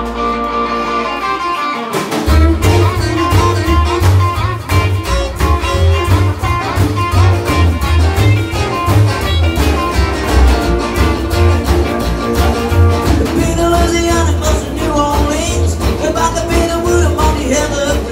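Live rock and roll band playing: acoustic and electric guitars, upright double bass and drums. The bass comes in with a strong, even pulse about two seconds in.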